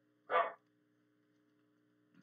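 A single short dog bark, about a third of a second in, over a faint steady hum.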